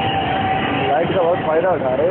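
A voice singing: one long steady held note, then a run of wavering, bending notes in the second half, over a constant noisy background.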